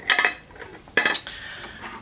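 Wooden coloured pencils clicking and knocking together as they are handled: a click just after the start and another about a second in, followed by a short scratchy rustle.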